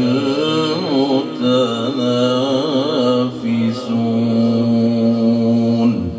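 A man reciting the Quran in a melodic tajweed style, amplified through a microphone: long drawn-out notes that waver through ornamented turns, with short breaks for breath between phrases.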